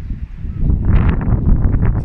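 Wind buffeting the microphone: a loud, uneven low rumble, with a patch of higher crackling from about a second in.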